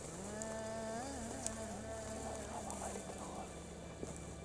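A flying insect buzzing, a steady hum that wavers in pitch about a second in and fades out after about two and a half seconds.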